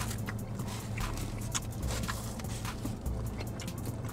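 Small clicks and rustles from a ketchup packet being squeezed out over a foam takeout box of fries, over a low steady hum in the car cabin.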